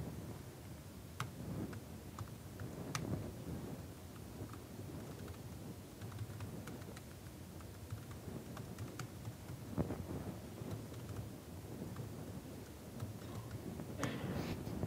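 Irregular, faint keystrokes typed on a computer keyboard.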